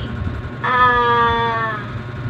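A voice drawing out the short-a phonics sound, 'aaa', as one held vowel that starts about half a second in, lasts about a second and sinks slightly in pitch.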